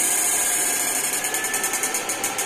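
Upgraded electrofishing inverter with fan cooling, running on a test load in cable-pull mode: a steady high hiss and whine. About a second in, a rapid regular pulsing of about ten beats a second sets in.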